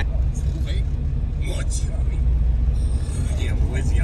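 A steady low rumble, with faint voices heard briefly about a second and a half in and again near the end.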